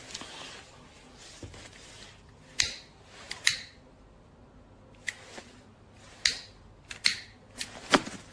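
Several short, sharp clicks at irregular intervals over a quiet room background, the loudest about two and a half seconds in.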